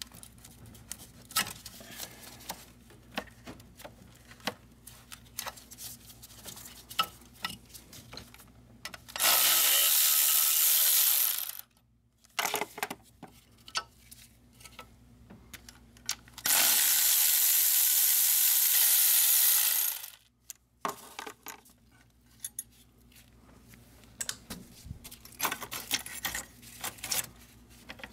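Cordless electric ratchet running in two bursts, one of about two seconds a third of the way in and a longer one of about three seconds past the middle, undoing the fasteners of a diesel engine's glow plug module. Light clicks and clinks of tools and metal parts being handled come between the bursts.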